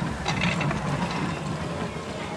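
Wheeled plate-dispenser cart loaded with stacks of ceramic plates being pushed over a tiled floor: a low rolling rumble from the wheels with the plates rattling in their racks.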